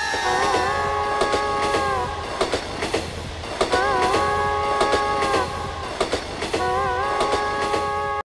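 Train horn sounding three long chord blasts, each starting with a slight waver, over the repeated clickety-clack of train wheels passing over rail joints.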